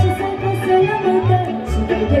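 Live Romanian folk music played over stage speakers: a fiddle melody over a steady, pulsing bass-and-chord beat.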